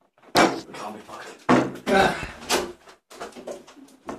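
Two sharp thumps about a second apart as one of the men gets up from the wooden table and goes out through the room's door, with the men's voices in between.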